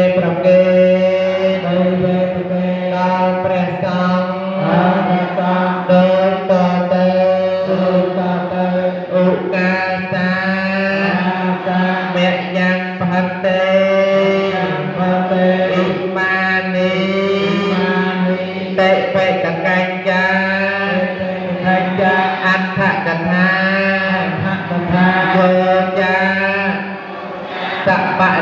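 A Khmer Buddhist chant sung by a solo voice in long, slow, melismatic phrases with heavy vibrato, over a steady low drone.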